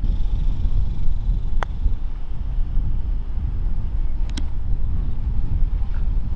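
Wind buffeting the microphone, a steady low rumble, with one sharp click about one and a half seconds in as a putter strikes a golf ball. A short double tick follows a few seconds later.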